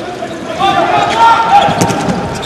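Arena sound of a live handball game: voices shouting across the hall, with a few sharp bounces of the ball on the court floor near the end.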